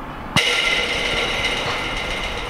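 A football striking a metal goal frame once, about a third of a second in, with a sharp impact; the frame then rings on in several steady tones that fade slowly.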